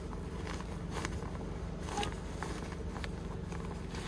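Hands rummaging through the pockets of a fabric backpack: soft rustles and a few light clicks, over a steady low hum.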